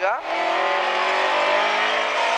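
Rally car engine heard from inside the cabin, pulling hard under throttle with a steady note whose pitch creeps slowly upward.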